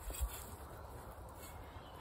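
Faint outdoor background with a low rumble, and a soft thud about a quarter second in as hands press the soil down around a newly planted courgette seedling.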